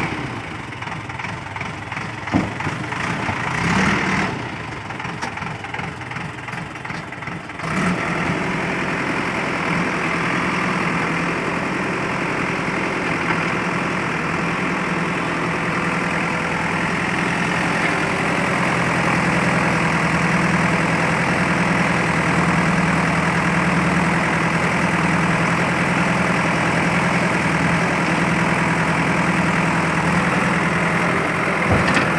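Diesel engine of a JCB backhoe loader running, low and uneven for the first several seconds with a single knock about two seconds in. Just before eight seconds it picks up to a louder, steady higher speed and holds there while the backhoe arm digs into rubble.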